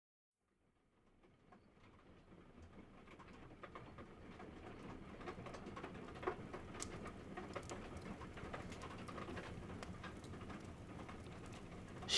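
Faint rain and fireplace ambience fading in over the first few seconds, then holding steady: an even patter dotted with scattered short crackles.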